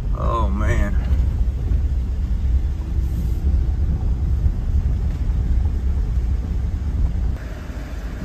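Steady low rumble of a vehicle driving, engine and tyre noise heard from inside the cabin. A brief voice sound comes in the first second.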